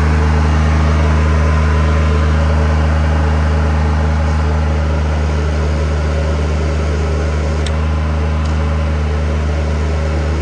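The Kubota diesel engine of a Ditch Witch HX30-500 vacuum excavator running steadily at constant speed, driving the high-pressure water pump.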